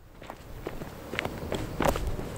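Footsteps on a gritty paved lane, a few steps getting louder as the walker approaches.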